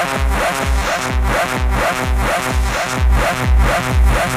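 Techno DJ mix: a steady kick drum at about two beats a second under a repeating synth loop.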